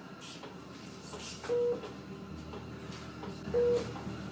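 Electronic beep from hospital bedside equipment: a short, single-pitched tone sounding twice, about two seconds apart, as a repeating alert.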